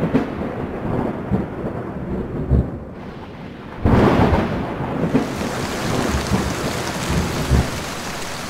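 Thunderstorm sound effect: rolling thunder fades, a second thunderclap breaks about four seconds in, and steady heavy rain follows.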